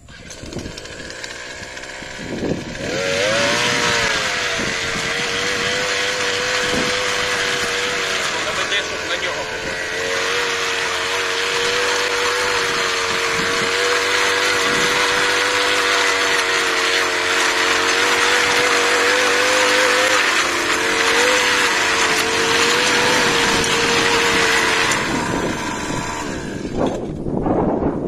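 A petrol brush cutter's engine revs up to a steady high speed, driving a cultivator attachment whose tines churn firm, dry soil. The attachment bounces over the hard ground rather than digging in. The engine dips briefly about two-thirds of the way through and drops away near the end.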